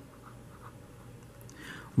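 Faint scratching of a pen tip writing a word on paper.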